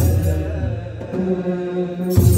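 Men's voices in unison singing an Ethiopian Orthodox mezmur (liturgical chant), holding long notes that shift in pitch about halfway through. A deep kebero drum stroke lands right at the start.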